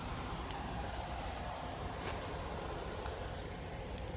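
Faint, steady low rumble of outdoor background noise in a truck yard, with a few soft clicks.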